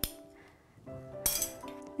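A handheld glass cutter working on a sheet of stained glass: a short glassy click at the start and a brighter, louder clink a little past a second in. Soft background music with held notes runs underneath.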